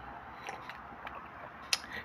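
Faint room tone in a pause between spoken phrases, with a few soft mouth clicks and one sharper click near the end.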